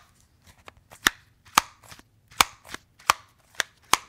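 White LG Chocolate slider phone being slid open and shut over and over, its sprung slide snapping into place with a series of sharp clicks about half a second to a second apart.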